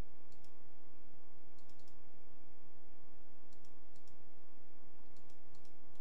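Computer mouse button clicked repeatedly, in quick pairs and triplets every second or two, while the system fails to respond after a crash. A steady low electrical hum lies under the clicks.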